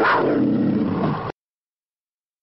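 An animal's roar that cuts off suddenly about a second and a half in.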